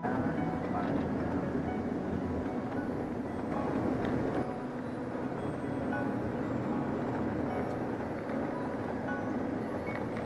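Interior noise of a moving tour coach: a steady rumble of engine and road noise, with indistinct voices mixed in.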